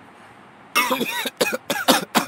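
A man laughing in a run of short, breathy bursts that start a little under a second in.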